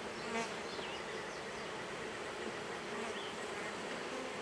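Honey bees buzzing steadily around an open hive.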